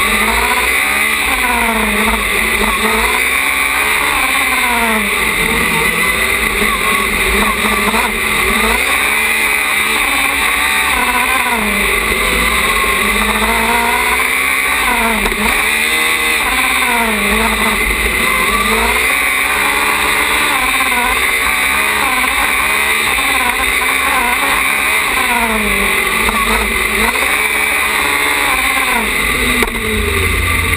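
Small open-wheel single-seater race car's engine heard from on board, revving up and dropping back again and again, about a dozen times, as it accelerates and brakes around the corners. The revs fall away near the end as the car slows.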